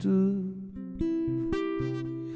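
Acoustic guitar being played: a chord strummed about a second in and left ringing, with a second strum shortly after.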